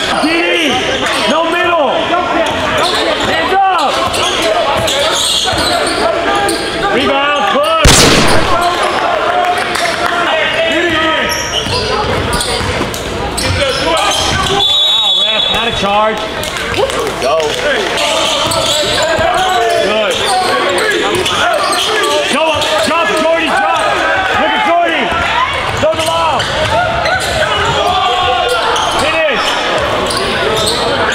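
Basketball game in a gym: a ball bouncing on the hardwood court among players' and spectators' voices, with one loud bang about eight seconds in.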